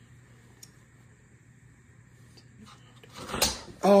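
A few faint small handling clicks, then about three seconds in a single short, loud crack as a chicken egg is dropped and breaks on the floor.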